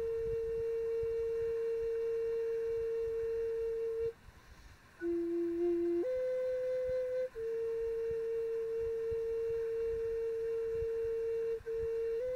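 Native American flute playing a slow melody of long held notes. A long note of about four seconds is followed by a short pause, then a low note steps up to a higher one, and another long note is held to near the end.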